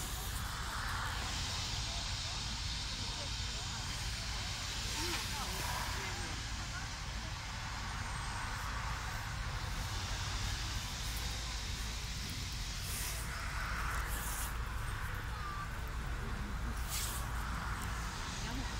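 Steady outdoor background noise on a walk, with a continuous low rumble and faint voices, and a few brief knocks.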